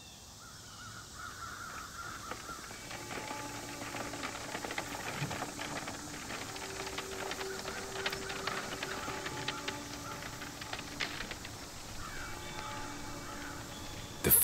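Ambient soundscape fading in over the first few seconds: bird calls over a few held low musical tones, with scattered clicks and crackles.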